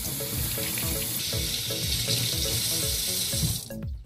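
Kitchen tap running steadily, water splashing over a peeled radish being rinsed in a stainless steel sink, shutting off near the end. Background music with short rhythmic notes plays underneath.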